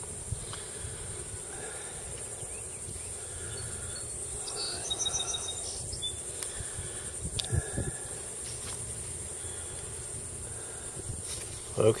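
Steady high-pitched drone of insects, with a few faint clicks and knocks about halfway through.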